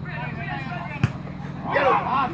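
Footballers shouting across the pitch, loudest near the end, with one sharp thud about halfway through, typical of a football being kicked, over a steady low hum.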